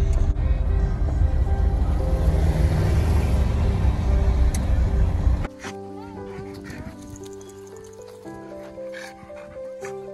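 Background music with held notes. For the first half a loud low rumble of road and wind noise inside a pickup truck's cab runs under it, and it cuts off suddenly about halfway through.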